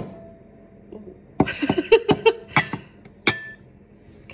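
A ceramic mug clinking and knocking against a bowl as it is held upside down and shaken to free a microwaved cake: one sharp ringing clink at the start, then a quick run of knocks and clinks in the middle, the last one ringing briefly.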